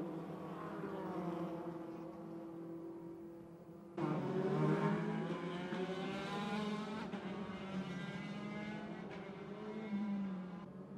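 Open-wheel single-seater racing cars running on a circuit, several engines at once, their notes climbing and dropping as they accelerate and change gear. About four seconds in the sound jumps suddenly louder and closer.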